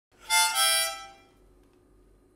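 Harmonica held in a neck rack, blown in two short chords one after the other, together lasting about a second before fading away.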